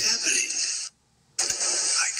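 A loud, steady hiss, with a spoken "that?" at the very start. It cuts out to near silence for about half a second just under a second in, then comes back.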